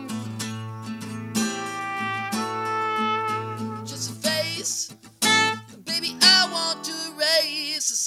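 Acoustic guitar strumming with a trumpet playing long held notes; about four seconds in a male voice comes in singing over them, with wavering vibrato on held notes near the end.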